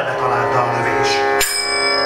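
Live Indian-style music with a violin playing over sustained pitched accompaniment. About one and a half seconds in comes a sharp metallic strike that keeps ringing, like a small bell.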